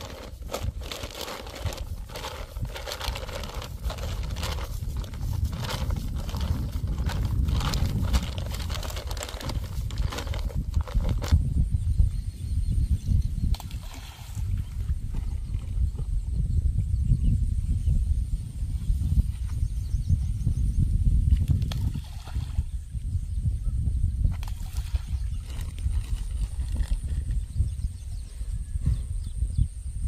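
A plastic sack rustles and crinkles as hands knead dry bait powder in it for about the first ten seconds. After that, wind buffets the microphone with an uneven low rumble.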